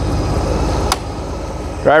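Honda Gold Wing GL1800's flat-six engine idling with a steady low pulse. A louder rushing noise lies over it in the first second and stops with a single sharp click.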